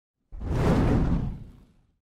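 A whoosh sound effect with a low rumble for an animated logo reveal: it starts suddenly and fades away over about a second and a half.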